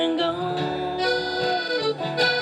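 Acoustic band music: a clarinet holds one long note that slides down near the end, over strummed acoustic guitar and upright bass.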